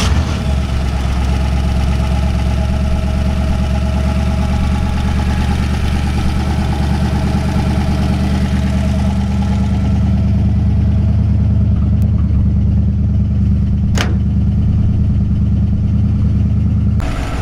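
A 1966 Ford 289 V8 with an Edelbrock carburetor and dual Smitty mufflers starts up and idles steadily.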